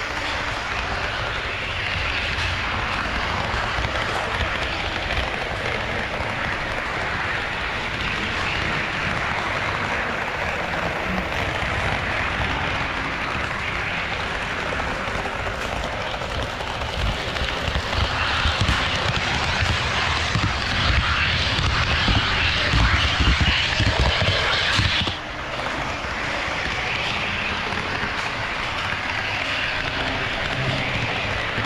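HO-scale model train running on KATO Unitrack, heard up close from a camera riding on it: a steady rolling rumble of wheels on rail with motor whirr. It gets louder about two-thirds of the way through, then drops suddenly about 25 seconds in.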